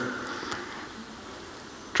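A pause in speech: low, steady room tone with faint hiss, as the last of a man's voice fades away at the start.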